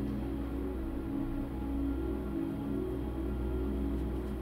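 Soft background music of sustained notes over a low bass, without a beat.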